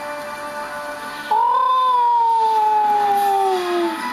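A long, drawn-out animal cry that rises briefly, then falls slowly in pitch for about two and a half seconds, over background music.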